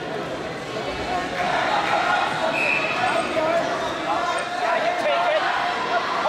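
Indistinct voices of spectators and coaches calling out across a gym hall, with scattered dull thumps.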